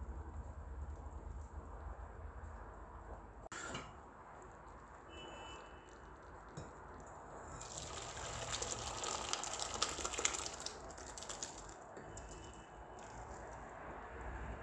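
Thick tomato sauce with cooked white beans being poured from a pot into a glass bowl: a wet, sloshing pour lasting a few seconds through the middle, over a low hum in the first few seconds.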